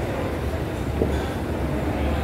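Mall escalator running, heard while riding it: a steady low mechanical rumble from the moving steps and drive, with a faint click about a second in.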